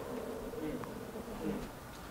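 Quiet pause in a small room: low room tone with faint, brief murmured voice sounds, twice.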